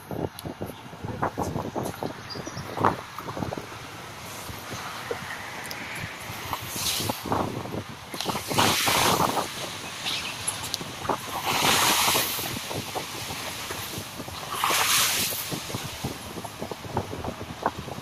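Open-top safari jeep driving along a bumpy forest dirt track, its body knocking and rattling over the ruts. Several louder rushing swells, each about a second long, come in the second half.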